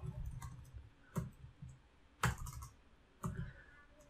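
Computer keyboard being typed on: a few separate keystroke clicks, the sharpest spaced about a second apart, with softer taps between.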